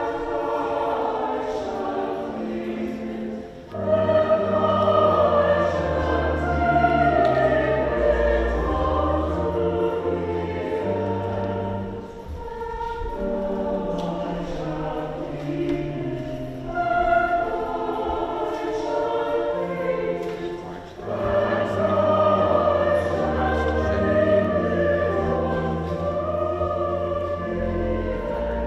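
Mixed church choir singing in parts with pipe organ accompaniment, the organ holding low sustained bass notes. The singing comes in long phrases, swelling louder about four seconds in, again near the middle and again past two-thirds, with short breaks between.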